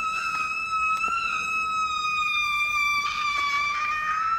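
A young man's long, high-pitched scream, held as one unbroken note that sags slightly in pitch and rises again near the end.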